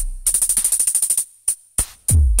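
Drum-machine beat: a deep bass kick's falling boom fades, then a rapid even roll of hi-hat ticks, about sixteen a second, followed by two single sharp hits near the end.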